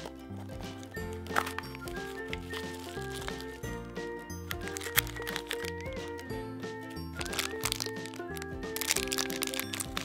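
Background music, over the crinkling and crackling of a foil blind-bag packet and a small cardboard box being opened by hand. The crinkling is thickest near the end.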